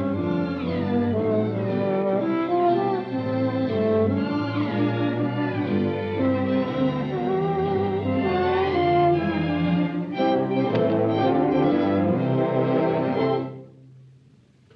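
Orchestral cartoon score led by bowed strings, with sliding string phrases; the music cuts off abruptly near the end.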